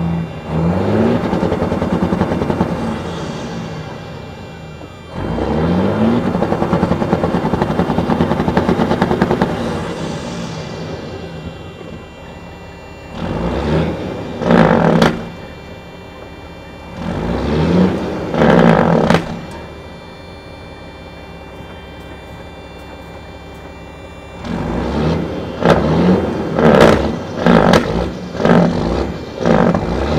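Diesel engine of a Freightliner cabover semi, freshly started after sitting, revved repeatedly. There are two long revs in the first ten seconds, a couple of pairs of short throttle blips in the middle, and a run of quick blips near the end.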